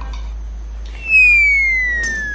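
Cartoon-style falling-whistle sound effect: one loud whistle tone that comes in about halfway through and glides slowly down in pitch.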